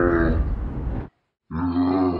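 A loud, drawn-out growling cry that cuts off abruptly about a second in. After a short silence, a second cry begins and trails off.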